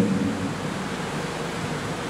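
Steady, even hiss of room noise picked up by the open microphone, with the tail of a man's voice fading out in the first moment.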